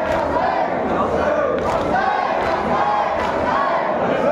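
Crowd of men chanting a marsiya lament together, the mourners' hands slapping their bare chests in matam about once a second.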